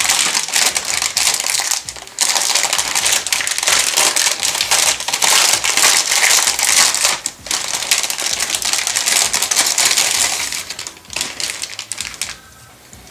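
A clear plastic bag crinkling loudly as grey plastic model-kit sprues are handled inside it and pulled out, with brief lulls about two seconds in and again mid-way, dying down near the end.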